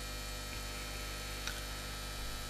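Steady low electrical mains hum, with one faint tick a little after halfway.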